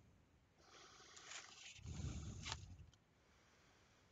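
A faint, slow breath through the nose close to the microphone, rising to its loudest about two seconds in and fading by three seconds, with a couple of small ticks.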